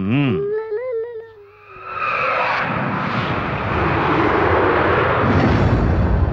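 Film soundtrack effect: a short wavering cry in the first second and a half, then a loud rushing dramatic swell that builds and holds, leading into a gong stroke.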